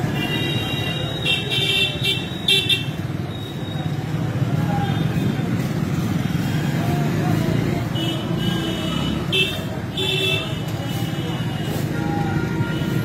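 Busy market street: a steady din of traffic and voices, with runs of high-pitched vehicle horn beeps near the start and again from about eight seconds in.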